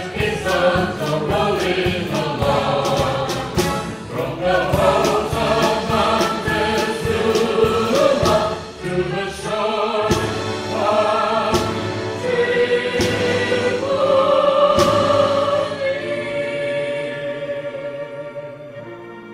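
A live orchestra with piano accompanies several singers in harmony, with regular percussion strokes in the first half. In the second half the voices and orchestra hold a long sustained note, which then fades away near the end.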